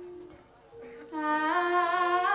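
A woman singing into a microphone with a wavering vibrato. Her held note fades to a brief pause with a breath just under a second in, then she starts a new phrase about a second in, stepping up and down in pitch.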